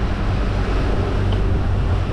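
A sailing catamaran motoring under way: a steady low engine drone under an even wash of wind and water noise.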